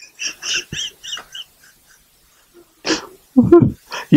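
A person's soft, breathy laughter: a quick run of about six unvoiced puffs in the first second and a half, with a short voiced sound a little before the end.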